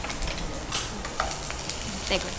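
Green chillies, garlic and ginger sizzling in hot oil in a kadai, with scattered crackles and a spatula stirring.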